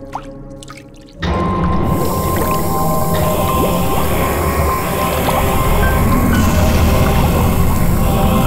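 Background music score comes in suddenly about a second in and holds loud and sustained, over a quieter opening of watery bubbling and dripping.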